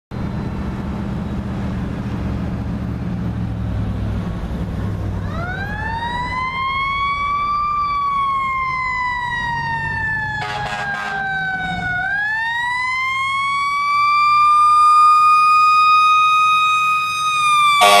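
Fire engine's Federal mechanical siren winding up about five seconds in over steady traffic noise, rising, coasting slowly down and winding up again as the truck approaches. A short burst of air horn blasts comes just after the middle, and the air horn sounds again at the very end.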